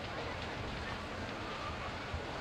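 Steady noise of a large warehouse fire burning, with scattered faint crackles.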